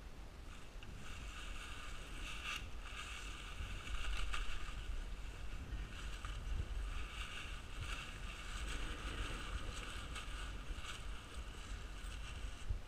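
Crinkling and rustling of a paraglider wing's nylon fabric as it is bunched up by hand, over a low rumble of wind on the microphone. The crackling comes in uneven bursts throughout, loudest about four seconds in.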